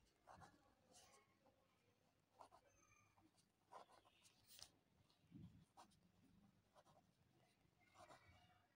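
Faint scratching of a pen writing on squared notebook paper, in short irregular strokes.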